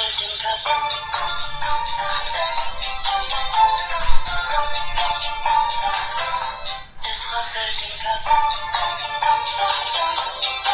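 A dancing cactus plush toy playing a song through its small built-in speaker, a thin sound with no bass; the music breaks off briefly about seven seconds in and carries on. A single loud thump comes about four seconds in.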